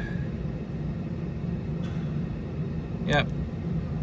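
Indoor fan blower of a Temperzone OPA 550 package air-conditioning unit running, a steady low hum.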